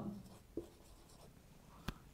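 Marker pen writing on a whiteboard, faint strokes with a short sharp click near the end.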